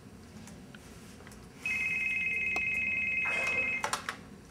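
Electronic telephone ringing, a rapid trilling two-tone ring that starts about one and a half seconds in and lasts about two seconds, then a few sharp clicks near the end.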